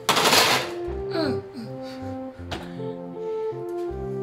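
Oven door swung shut with a loud clunk at the start, over background music of sustained notes. A single sharp click comes about two and a half seconds in.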